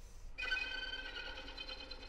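Solo violin: after a short hiss, a sustained bowed note comes in suddenly about half a second in and is held quietly, slowly fading.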